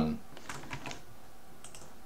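A handful of light computer keyboard keystrokes, scattered and spaced apart.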